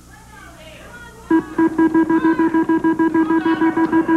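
The Big Wheel on The Price Is Right spinning. About a second in, a fast, even run of identical pitched ticks starts and keeps going, one tick for each number that passes the pointer.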